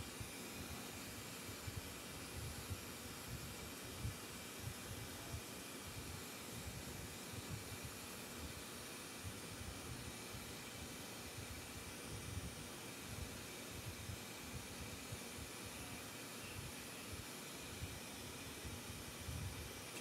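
Bench flameworking torch burning with a steady hiss, a faint irregular flutter low underneath.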